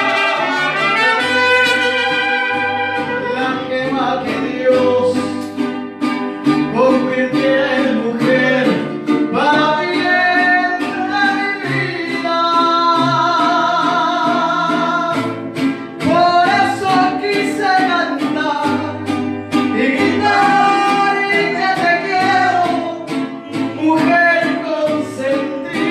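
Mariachi music: a male voice singing with vibrato over guitars and brass, with a bass line stepping from note to note.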